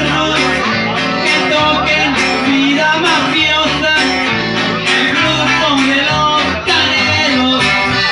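A small live band playing a song on accordion and guitars, with a steady beat.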